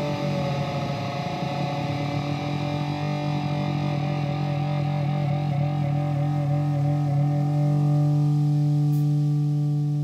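Distorted electric guitar through effects, letting a held chord ring on, with a slight wobble in its upper notes and a slow swell; no drums are playing.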